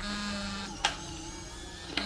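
Polaroid Lab instant photo printer running its motor as it ejects an exposed instant film, with two sharp clicks, one just under a second in and one near the end; background music plays underneath.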